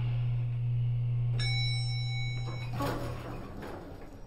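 Background music: a steady low drone, with a bell-like chime ringing about a second and a half in and fading after a second or so; the drone dies away near the end.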